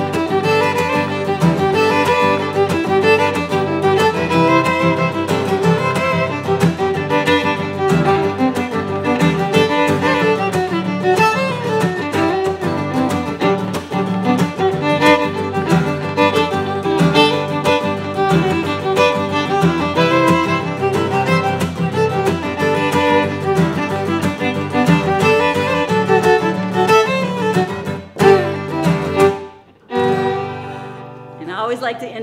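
Fiddle and steel-string acoustic guitar playing a two-step together, the fiddle carrying the melody while the guitar keeps a driving up-and-down strum with left-hand-muted chucks that give a snare-drum-like beat. The playing drops away just before the end.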